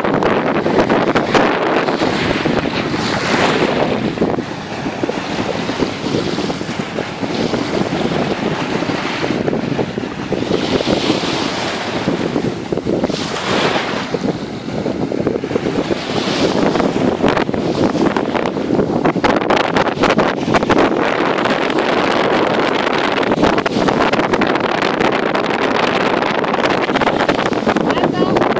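Strong wind buffeting the microphone, with small waves washing onto a sandy shore underneath.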